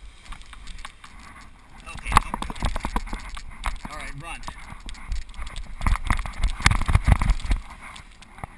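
Hurried running footsteps thudding on a grassy slope as a tandem paraglider runs to launch. The steps start about two seconds in and stop shortly before the end as the glider lifts off.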